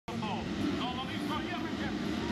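A pack of motocross dirt bikes revving at the start gate and pulling away together, the engine pitch rising and falling.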